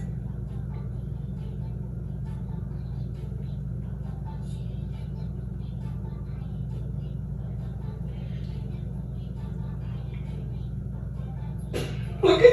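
A steady low rumble with faint, indistinct sounds above it.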